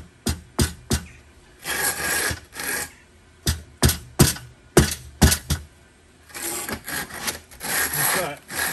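A mallet tapping a steel recessed paving tray down into its mortar bed to bring it level. The sharp taps come in two runs, three near the start and about six between three and a half and five and a half seconds in, with stretches of rasping scraping between and after them.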